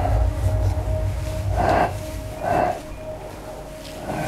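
Dark, horror-style sound design: a deep low rumble under a steady held tone, with two short breathy sounds in the middle. The rumble dies away about halfway through and the last second is quieter.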